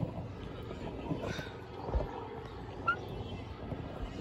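Steady outdoor background noise with a single low bump about two seconds in and a few faint, distant voices.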